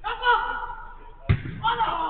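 Footballers shouting during a five-a-side match, with one hard thud of the football being struck just past halfway.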